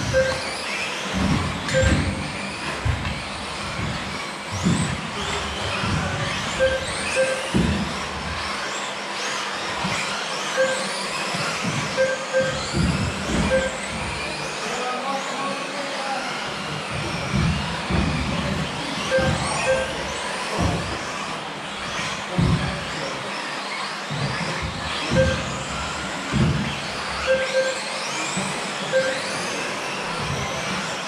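Electric 1/10-scale off-road RC buggies racing on a carpet track: their motors whine, rising and falling in pitch as they accelerate and slow. There are frequent dull thumps and short beeps repeating every second or two.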